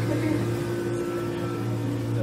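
Emery Thompson 12-quart batch freezer running with a steady, low mechanical hum.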